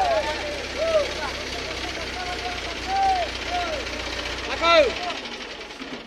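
Men's short shouted calls, each rising and falling in pitch, the loudest a little before the end, over a steady hiss and a low hum that cuts out near the end.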